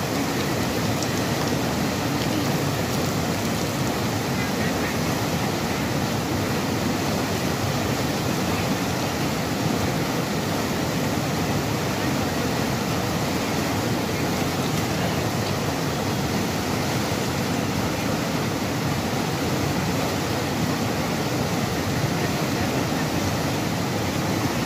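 Turbulent white-water rapids of a fast mountain river rushing, a loud, steady, unbroken noise.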